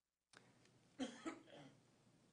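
A short cough about a second in, close to the microphone, with a faint click just before it.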